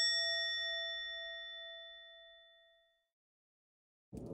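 A single struck bell ringing out and fading away over about three seconds, an edited-in comic sound effect for the spilled curry.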